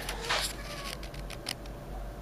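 Faint handling noise: a brief rustle at the start, then a few light clicks, over a steady low hum.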